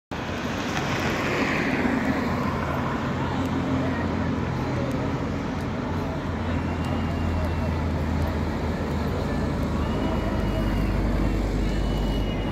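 Road traffic: a steady noise of motor vehicles on a wide multi-lane road, with a low engine hum underneath.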